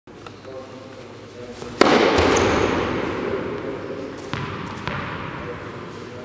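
A loud bang about two seconds in, dying away slowly in the echo of a large sports hall, followed by a few sharper knocks, with faint voices underneath.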